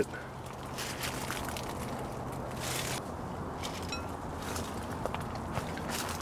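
Quiet garden ambience with light rustling and footsteps among dry leaves and fig branches. A low steady hum stops about halfway through.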